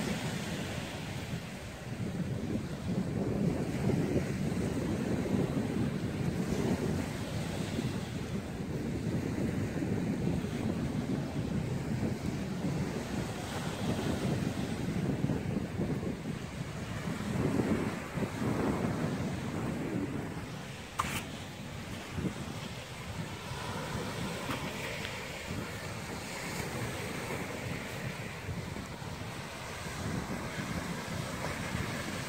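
Surf washing onto a sandy beach, rising and falling, with wind buffeting the microphone.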